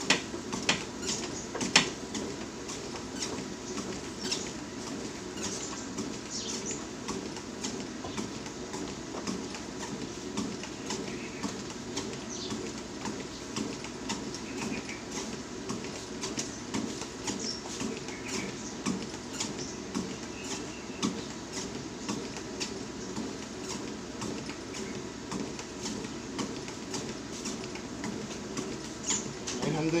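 Motorized treadmill running at a walking pace: a steady hum from the belt and motor, with footsteps landing on the deck as a string of soft knocks.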